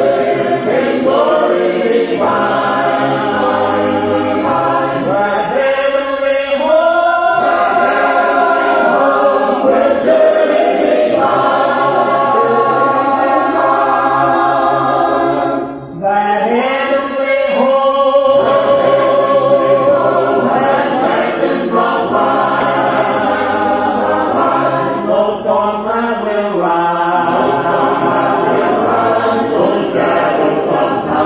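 A group of voices singing a gospel hymn in harmony, a cappella, with one brief breath between phrases about halfway through.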